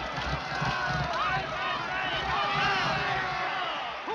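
Racetrack crowd shouting and cheering horses home in a close finish, many voices overlapping, over the low, regular thud of galloping hooves.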